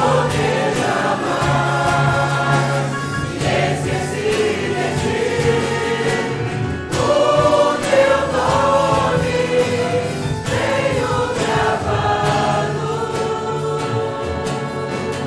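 A church choir singing the chorus of a Portuguese hymn, accompanied by keyboard and acoustic guitars.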